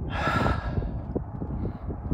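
A man's long sigh of breath out in the first half second or so, over a low, uneven rumble on the microphone.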